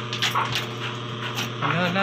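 Short high-pitched vocal sounds, then a word spoken with a laugh near the end.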